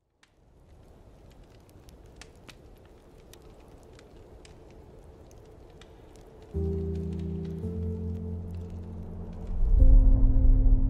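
Film soundtrack: a faint steady hiss with scattered light crackles, then about six and a half seconds in a low sustained music chord comes in, shifts a second later, and swells louder near the end.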